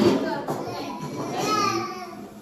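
Young children's high-pitched voices chattering as they play.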